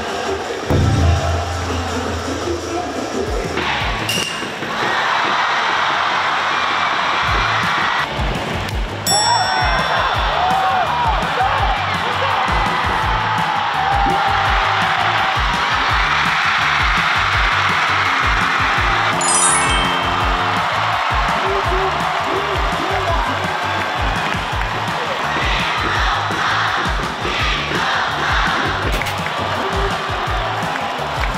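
Background music with a steady beat over ballpark crowd noise and cheering, which swells about four seconds in.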